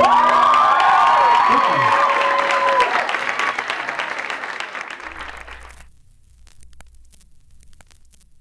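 Small audience applauding and cheering, with a few whoops, as the last acoustic guitar chord stops; the applause fades out about six seconds in.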